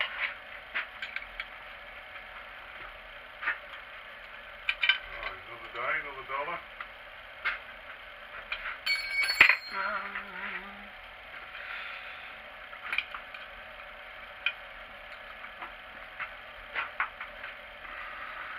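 Scattered light metallic clicks and clinks of small hand tools and steel parts being handled on a milling-machine vise, the loudest a sharp knock about halfway through. A faint voice murmurs briefly.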